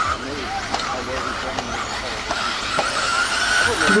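1/10-scale 4WD electric RC buggies with 13.5-turn brushless motors running on the track, a thin, steady high motor whine strongest in the second half, with people talking in the background.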